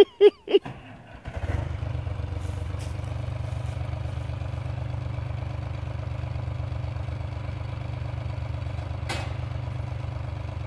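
Diesel engine of a TimberJack 225 cable skidder catching about a second in, after a brief shout, and then running steadily. Just before, the machine's battery and cranking were in doubt.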